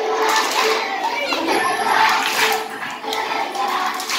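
A crowd of children chattering and shouting, with a song playing underneath.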